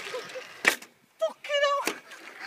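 Two sharp knocks about a second apart, with a brief wavering vocal cry just before the second.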